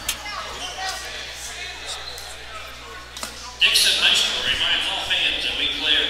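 Gymnasium basketball game sound: voices and crowd chatter with a ball bouncing on the hardwood. About three and a half seconds in, a much louder burst of crowd noise.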